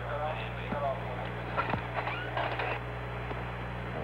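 Faint, indistinct voices over the mission radio loop, under a steady low electrical hum from the old broadcast recording.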